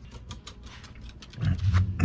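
A small dog growling in play: short snuffling, scuffling sounds, then a loud, low growl starting about one and a half seconds in.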